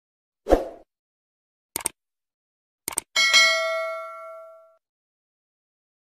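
Animated subscribe-screen sound effects: a soft thump, two quick double clicks, then a bell-like ding that rings out and fades over about a second and a half.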